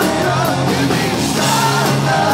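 Live rock band playing loudly: a male lead singer singing over electric guitar, bass and drums.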